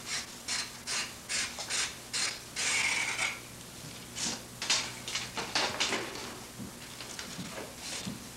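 Knife shaving a black ash basket splint drawn over a leather knee pad: a run of short, dry scraping strokes at an uneven pace, with one longer stroke about two and a half seconds in.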